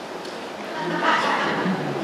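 A short burst of voice about a second in, over steady hall hiss.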